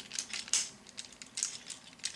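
Plastic parts of a Transformers Ramjet action figure clicking and rubbing as its wings are folded by hand: a scatter of small, sharp clicks.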